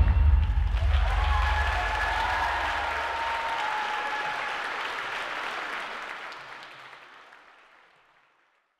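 Audience applauding as the carnival drumming ends, with a faint pitched call or cheer in the first few seconds; the applause fades out near the end.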